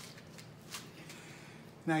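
Faint, brief rustling and handling noises, a few soft brushes, over a low steady hum.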